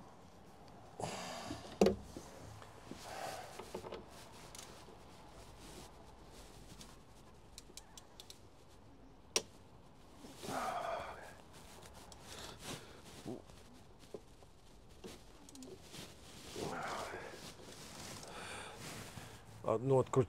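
Scattered clicks and knocks of a hand tool on the metal inside a truck door, loudest as a sharp knock about two seconds in and a sharp click about nine seconds in. Short breathy sounds come between them.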